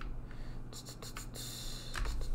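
Typing on a computer keyboard: scattered keystrokes, then a quicker run of typing in the second half, over a low steady hum.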